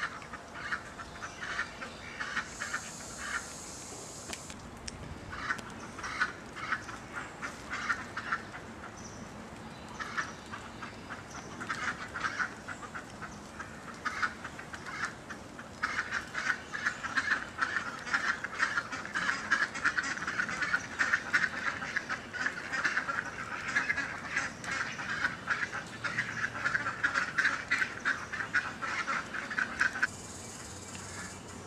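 Birds calling over and over, many short calls, sparse at first and much busier from about halfway through. A brief high hiss sounds a few seconds in.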